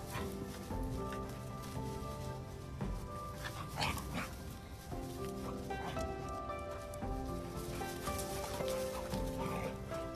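Background music with sustained notes, over which a dog barks once about four seconds in.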